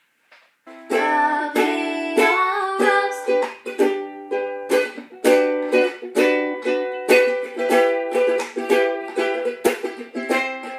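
Ukulele strummed in chords, starting about a second in after a moment of silence and going on in a steady, repeated strumming pattern.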